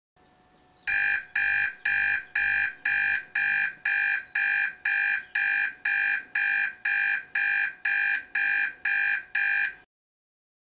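Digital alarm clock going off: a steady run of identical high beeps, about two a second, cut off suddenly near the end as it is switched off.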